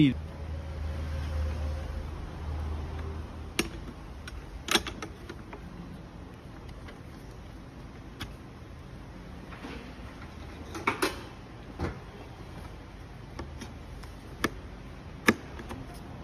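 Metal clicks and knocks from a truck seat's slide rails and quick-adjust handle being fitted together by hand: about eight separate sharp clicks, spread out and with long quiet gaps. A low hum sounds under the first few seconds.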